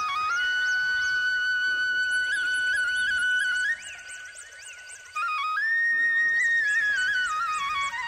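Instrumental intro of a Nepali folk song: a flute playing an ornamented melody with quick grace notes and slides. It softens for a moment in the middle, then comes back and climbs higher.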